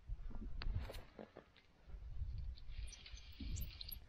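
Low buffeting rumble on the microphone in two stretches, with a few scattered light clicks and rustles, while an angler plays a fish on a hard-bent rod.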